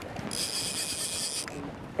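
Fly reel drag buzzing for about a second as a hooked tarpon pulls line off against it. The high-pitched buzz starts and stops abruptly, over a hiss of wind and water.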